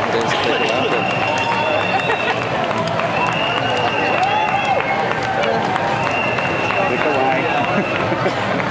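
A street crowd of many overlapping voices chattering and calling out. A high, steady whistle-like tone sounds in three stretches of about two seconds each, with short gaps between them.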